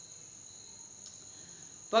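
Pause in a man's speech, leaving a faint steady high-pitched whine at two pitches; his voice comes back right at the end.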